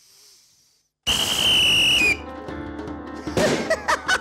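A whistle blown in one loud, steady, high blast of about a second, starting about a second in, as the signal to start the game round. Music starts right after the blast.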